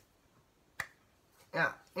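A pause with one sharp click a little under a second in, then a man's voice saying "ja" near the end.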